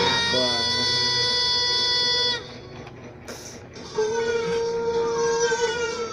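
Recorded music playing through a computer's speakers: a long held note stops about two seconds in, a short quieter gap with a click follows, then another track comes in with a long held note that slides down near the end.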